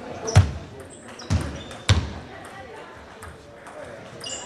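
Table tennis rally: three sharp knocks of the celluloid ball on the bats and table. Short high squeaks of shoes on the hall floor can be heard between them.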